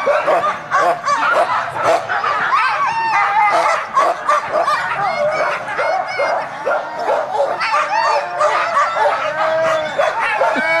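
A pack of harnessed sled dogs barking all at once, a continuous overlapping din of short calls with no break.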